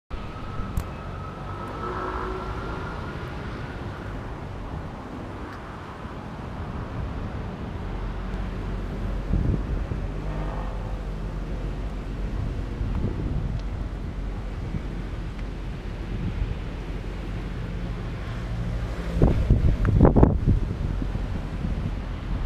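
1971 Moto Guzzi V7 Special's air-cooled 90° V-twin idling steadily, getting louder twice near the end as if the throttle were blipped. Wind noise on the microphone.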